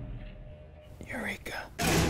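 Closing sound design of a film trailer. A low sound fades away, a brief whispered voice comes in about a second in, and then a sudden loud musical hit lands near the end, its low note ringing on.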